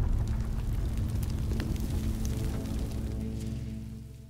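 Fire-and-explosion transition sound effect over music: a sudden loud blast with crackling, held under a steady low drone, fading away near the end.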